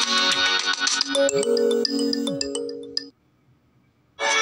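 Smartphone ringtone of an incoming call: an electronic tune with a melody over swooping low notes. It stops suddenly about three seconds in.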